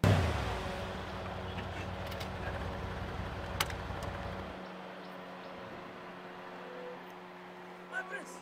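A car driving in, its engine and road noise loudest at the start and dropping away after about four and a half seconds, leaving a steady low hum.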